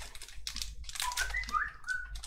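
Foil booster packs crinkling and clicking as they are handled and shuffled between the fingers. About halfway through come a few short, high, stepping tones like brief whistling.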